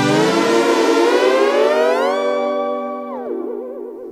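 Waldorf Blofeld synthesizer pad chord held on the sustain pedal, its pitches gliding slowly upward for about two seconds, holding, then dropping quickly about three seconds in and wavering. The slow glides are the mod wheel's movement smoothed by a lag processor.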